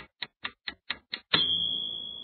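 Countdown timer sound effect: fast, even clock-like ticking, about four ticks a second. About one and a half seconds in, the ticking stops and a single high tone sounds, marking time up.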